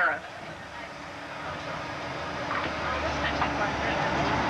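Bus interior noise while driving: engine and road noise, with a low engine drone growing steadily louder over the second half.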